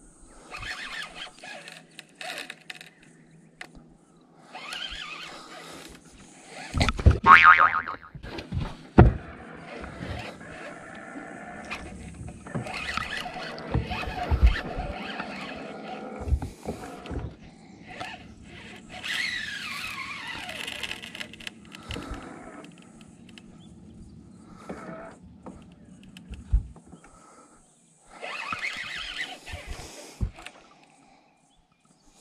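Baitcasting reel and line under load while fighting a hooked barramundi: the drag gives line in short squealing runs, with reel winding in between. Scattered sharp knocks run throughout, and the loudest squeal comes about seven seconds in.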